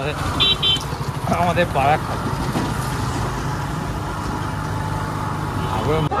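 Small engine of a motorised two-wheeler running steadily as it is ridden, a low continuous rumble with road noise.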